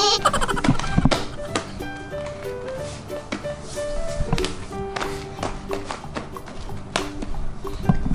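Background music: a simple melody of short held notes over a steady, clicking beat.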